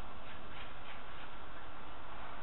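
Steady background noise with no distinct event, and a few faint short high chirps in the first second.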